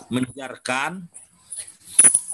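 A man's voice in short, drawn-out syllables that the recogniser wrote down as no words, heard over a video call.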